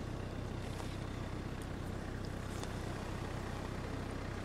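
An engine running steadily at idle: a low, even hum that holds at one level throughout.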